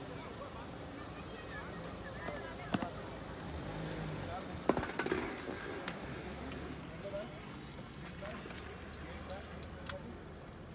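Indistinct voices over a steady outdoor hum, with a few sharp clicks and knocks, the loudest about five seconds in; no engine is running.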